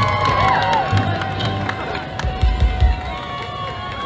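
Crowd cheering over music, with one long held note running through most of it and a few low thumps a little past halfway.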